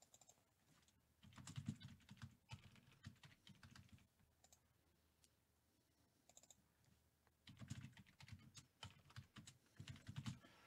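Faint typing on a computer keyboard, in two short runs of key clicks: one starting about a second in, the other starting around seven and a half seconds.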